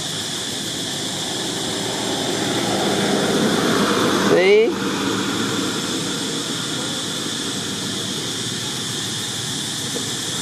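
A motorbike going by: its engine noise builds over a couple of seconds and peaks a little before halfway with a brief rising whine, then drops back into steady background traffic noise.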